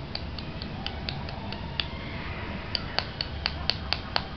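A string of sharp clicks, about four a second with a short pause midway, the later ones louder.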